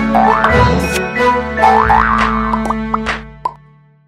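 A bright animated-logo jingle: music with cartoon sound effects. Two quick sounds slide up in pitch and a few short pops follow, and the jingle fades out near the end.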